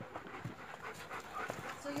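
Dogs panting, with a few light knocks and scuffs scattered through.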